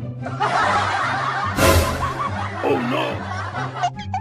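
Laughter from several voices, snickering and chuckling, over background music with a steady low bass, with a short rush of noise about a second and a half in.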